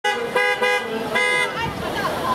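A vehicle horn tooting three times: two short toots back to back, then a slightly longer third about a second in.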